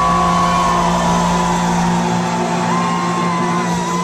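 A live rock band's electric guitars hold a long, ringing final note, with small pitch slides in the high tone. The bass and drum rumble drops away about two seconds in, leaving the guitars ringing.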